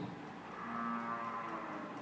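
A faint, low-pitched call: one steady tone held for about a second.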